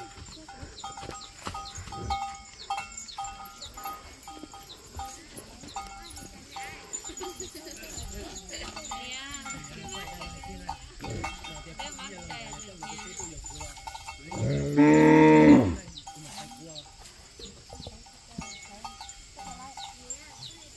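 A cow lows once, a single long low moo about fifteen seconds in and the loudest sound here. Faint short bell-like rings come and go in the first half.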